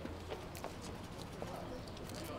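Footsteps of people walking on a paved path: a few sharp, irregularly spaced shoe clicks.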